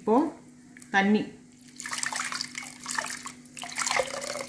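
Water poured and splashing into a clay pot of tamarind water and mashed tomatoes, starting about two seconds in, while a hand squeezes the mixture.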